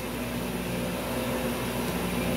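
Steady machinery hum with a constant low drone and an even hiss, unchanging throughout.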